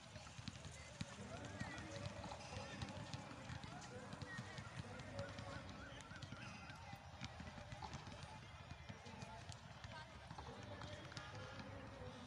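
Distant, indistinct voices and calls from a group of people playing basketball on an outdoor court, with scattered faint sharp knocks over a low steady rumble.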